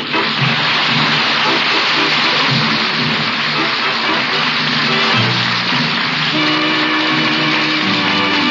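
Studio audience applause mixed with a short music bridge marking the end of the scene; the music's held notes stand out more clearly in the last couple of seconds.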